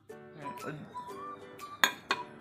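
Background music with a sliding melody, and one sharp clink of glass near the end, the loudest sound, ringing briefly.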